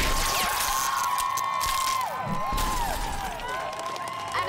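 Comedy sound effect: a high, steady whistling tone that dips and wobbles in pitch several times over a hiss. It follows straight on from a punch impact.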